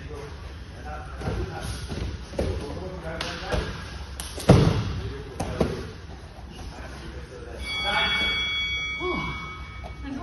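Bodies hitting padded grappling mats as a clinch goes to the ground in a takedown, with one loud, deep thud about four and a half seconds in and smaller knocks and scuffles around it.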